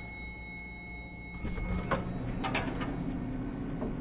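Logo sting sound design: a bright metallic chime rings out over a low drone and fades about two seconds in, with a few sharp clicks and swishes in the middle.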